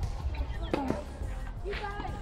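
Tennis ball struck by a racket on a serve and bouncing on a clay court: a few sharp knocks, with distant voices behind.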